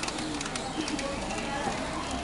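City street ambience: a steady background of traffic and street noise with indistinct voices.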